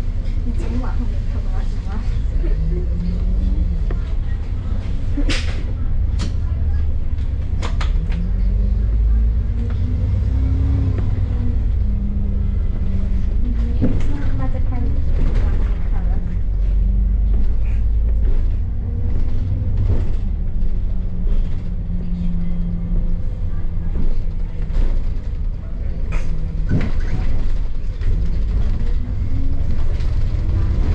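A double-decker bus's diesel engine, heard from inside the bus: a deep drone whose note rises and falls several times as the bus pulls along and changes gear, with a few sharp rattles and knocks from the body.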